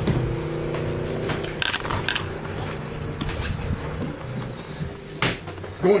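Footsteps and a few sharp knocks on a boat's companionway steps, going down into the cabin, over a steady low hum.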